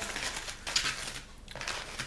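Small plastic zip bags of diamond-painting drills crinkling as they are handled and put into a plastic basket, loudest in the first second and quieter after.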